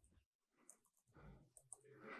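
Near silence with a few faint laptop keystrokes as a short command is typed.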